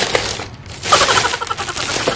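Plastic carrier bag and paper wrapping rustling and crinkling as takeout food is pulled out, in two bursts: a short one at the start and a louder, longer one from about a second in.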